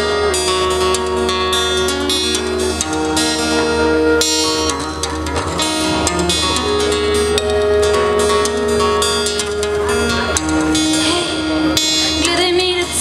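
Strummed acoustic guitar with a flute playing long held notes over it: a live instrumental passage of a song.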